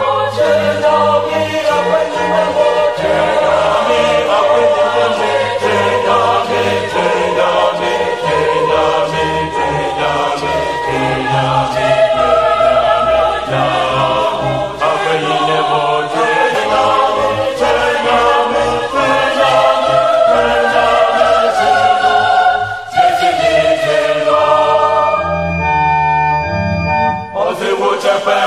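Choral music: a choir singing over a low instrumental accompaniment, with a brief break about 23 seconds in.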